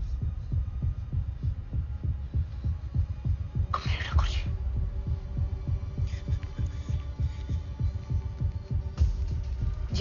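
Film soundtrack underscore of deep, throbbing bass pulses repeating steadily through a tense pause. A brief higher-pitched sound cuts in about four seconds in.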